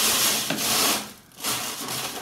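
Dried Sichuan pepper (Zanthoxylum piperitum) husks and seeds rubbed by hand against the mesh of a wooden-rimmed sieve, making a dry rasping rustle; the rubbing frees the seeds from the husks. There is one long stroke up to about a second in, then a shorter one near the end.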